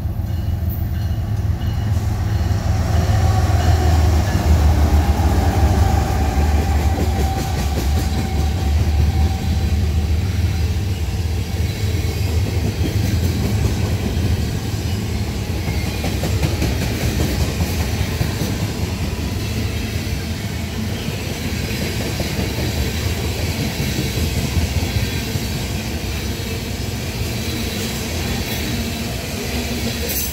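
A CN mixed freight train passing close by: its diesel locomotives go by with a deep engine rumble, loudest a few seconds in. Then a long string of boxcars and tank cars rolls past with steady wheel clatter on the rails.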